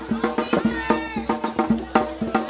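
Traditional Lumad music: struck pitched percussion beaten in a fast, even rhythm of about five strikes a second, with a voice heard over it.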